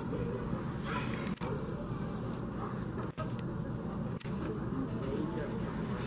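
Steady outdoor background noise with faint, distant human voices mixed in; no distinct animal call stands out.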